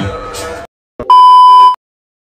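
Background music cuts off abruptly; after a short gap and a click, a loud electronic beep sounds: one steady high tone held for about two-thirds of a second, then it stops.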